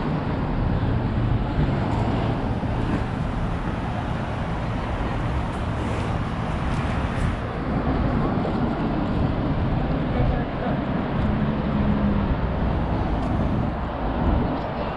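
Steady city street noise of road traffic passing on a multi-lane roadway, with people talking nearby.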